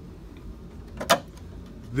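A single sharp plastic click about halfway through, as the hinged receptacle cover on a Miller Trailblazer 325 welder/generator is handled and flipped up, over a low steady hum.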